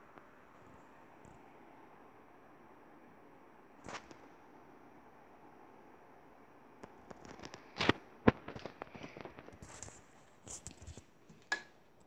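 Quiet room tone with a single click about four seconds in, then a cluster of sharp clicks and knocks through the second half, two of them loudest about eight seconds in and another just before the end.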